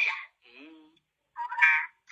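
A person's voice in short utterances with brief pauses between them, thin and tinny.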